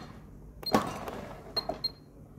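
Short high beeps from the Sentry A6 Max gate motor controller's keypad as its button is pressed in short increments, three in all, with a sharp knock about three-quarters of a second in.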